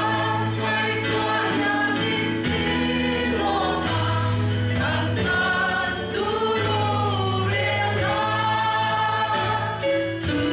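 A congregation singing a hymn together with a live worship band, held sung notes over a steady keyboard and bass accompaniment.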